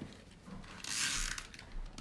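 Tape runner drawn across the back of a card panel, its adhesive reel ratcheting and rasping for about a second as it lays down tape.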